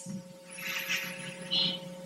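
Pause between spoken sentences: the steady electrical hum and hiss of an old lecture-hall video recording, with a soft hiss about half a second in and another short one near the end.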